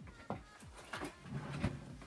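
Sewing supplies being rummaged through and handled: a run of light clicks, knocks and rustles, with a sharper knock about a quarter second in and several more after the first second.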